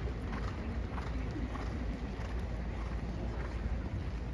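Horses walking on the dirt footing of an indoor show arena, their hoofbeats faint and irregular over a steady low rumble.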